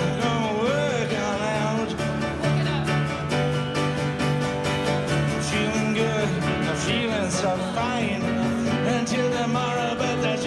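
Live acoustic rock music: strummed acoustic guitars and piano with a man singing over them.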